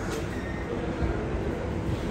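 Steady low rumbling background noise with a faint steady hum; no single source stands out.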